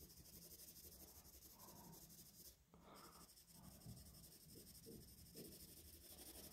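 Faint scratching of a graphite pencil hatching on paper, shading a drawing in quick strokes, breaking off briefly about halfway through.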